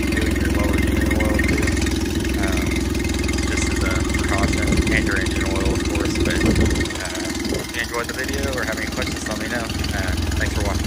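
Mercury 8 hp four-stroke outboard idling steadily, running on a hose water supply with its water pump now moving cooling water. The engine gets a little quieter about seven seconds in.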